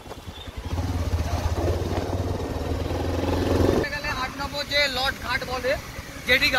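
Motorbike engine running steadily while riding, a low even hum that stops abruptly a little under four seconds in; voices follow.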